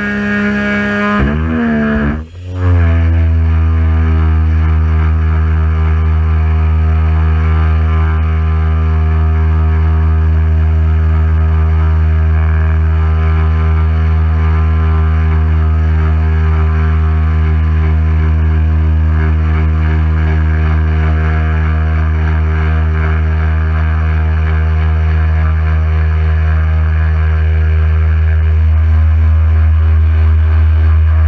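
Pressure washer running while its lance sprays water onto a car's paintwork, a loud steady hum. Its pitch shifts in the first couple of seconds, then holds steady.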